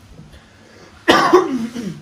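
A person coughs once, about a second in: a sudden loud burst that trails off with a falling voiced tail.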